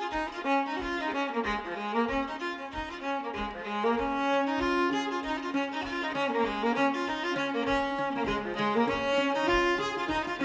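Instrumental break in a folk ballad: a fiddle plays the tune over a steady low beat about twice a second.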